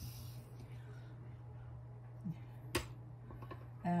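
Quiet room with a low steady hum and one sharp click nearly three seconds in, from handling materials on a work table.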